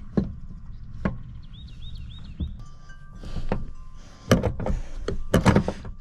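Scattered knocks and thuds from a truck's back seat being worked loose and lifted by hand, with a louder burst of knocks about four seconds in.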